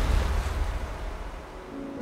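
Rushing sea surf and splashing water with a deep rumble, fading steadily away.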